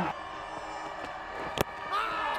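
Low steady background ambience, then about one and a half seconds in a single sharp crack of a cricket bat hitting the ball.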